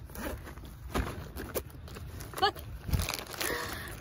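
Handling noises: crinkling, crackling and rustling of a plastic water bottle and a backpack, with scattered small clicks. A brief short vocal sound comes about two and a half seconds in.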